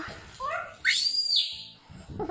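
A young child's voice sliding upward into a brief, high-pitched, whistle-like squeal about a second in, which falls off quickly.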